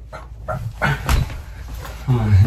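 Short bursts of a person's wordless voice, laughter-like sounds rather than speech, with a sharp knock about a second in.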